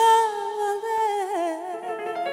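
A woman's voice singing a long wordless note that swoops up into pitch at the start, holds, then breaks into a wavering, falling ornament in the second half.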